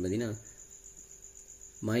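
A man's voice trails off, then a pause in which only a faint, steady, high-pitched whine goes on. The voice resumes near the end.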